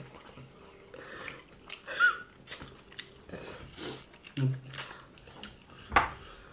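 Close-miked chewing and wet mouth sounds of people eating wheat fufu and egusi soup by hand, with scattered short smacks and clicks. A brief voice sound comes about four and a half seconds in.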